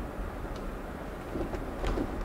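Steady low road and tyre noise heard inside a Tesla electric car's cabin as it drives slowly on a snow-covered street, with no engine sound. A faint short click comes just before the end.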